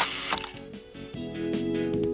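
A camera shutter and film-advance sound effect, a short clicking whir at the very start, followed by background music with held notes.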